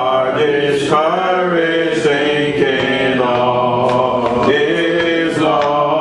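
A man's voice singing a hymn in slow, long-held notes that glide between pitches.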